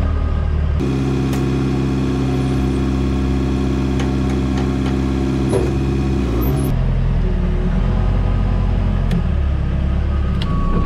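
Telehandler engine heard from the driver's seat in the cab. The engine speeds up about a second in and holds a steady, higher hum while the machine is driven, then drops back to a low idle rumble about two-thirds of the way through.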